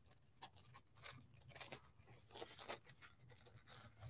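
Near silence apart from faint, irregular snips of scissors cutting around motifs on a paper napkin, with light paper handling.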